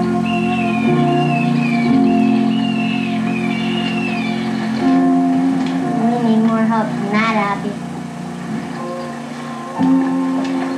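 Film score music: held low chords with a repeated falling melodic phrase over them, then a short wavering rising figure about seven seconds in.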